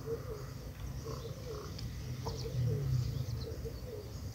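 Animal calls in the background: short chirps repeating about three to four times a second over a low steady hum.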